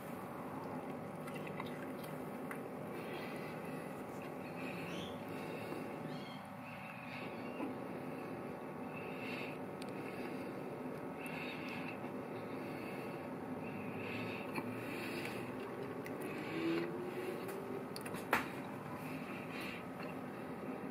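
A person quietly chewing a mouthful of lamb-and-rice stuffed vine leaf (dolma), over a low steady room hum; a single sharp click near the end.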